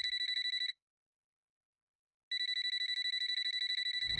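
Electronic ringer sounding a high, fast-trilling tone in rings: it cuts off under a second in and starts again after a silent gap of about a second and a half.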